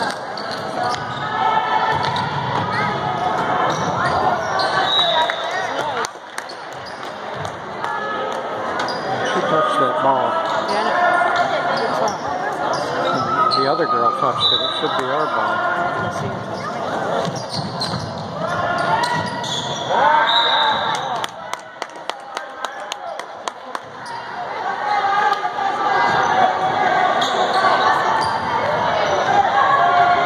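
Basketball bouncing on a hardwood gym floor as players dribble, with players and spectators shouting and talking throughout, echoing in the large gym.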